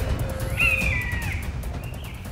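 A single drawn-out bird squawk with a falling pitch, starting about half a second in, over low, rumbling music.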